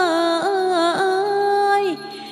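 Theme-song singing: a voice holds one long, ornamented note that wavers in pitch over steady accompaniment, then glides down and falls away near the end.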